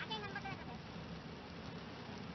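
Steady noise of heavy rain and wet road heard from inside a moving car. A brief high, voice-like call sounds in the first half-second.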